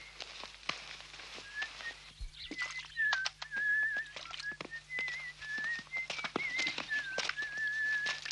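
A person whistling a wavering tune, starting about a second and a half in and continuing with held, trilled notes, over scattered light clicks and knocks.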